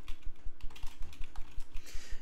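Typing on a computer keyboard: a run of quick, uneven keystroke clicks, about four or five a second.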